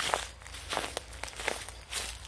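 Footsteps of someone walking over grass and leaf litter: four steps, a little under a second apart.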